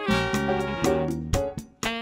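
Jazz band with horns (trumpet, tenor sax, trombone) over piano, bass and drums, playing a blues. The band plays short accented chords punctuated by drum hits, with a brief break in the sound near the end.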